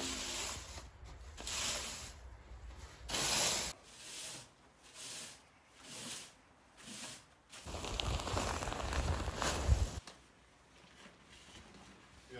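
Plastic fan rake scraping and dragging through sand in repeated strokes, about one a second, leveling it. The strokes fade out about ten seconds in.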